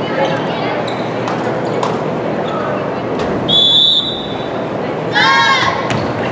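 A volleyball served and played in a gym: several sharp ball hits and a couple of high sneaker squeaks on the hardwood floor, over the steady chatter of spectators.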